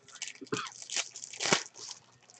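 Baseball trading cards being flipped and slid against one another in the hand. A few crisp, papery scrapes come about half a second apart.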